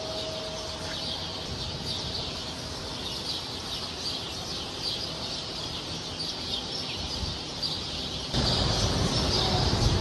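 Many small birds chirping high and busily over a steady background hiss; a louder low rumbling noise comes in about eight seconds in.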